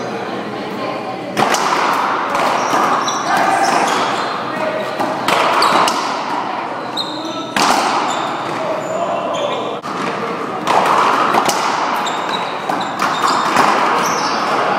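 Racquetball rally: sharp cracks of racquets striking the ball and the ball hitting the wall, every two to three seconds, echoing in a large hall.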